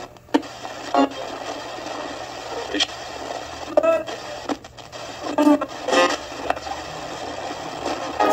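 Portable AM/FM radio hissing with static, broken by a few short clicks and brief snatches of broadcast voices and music.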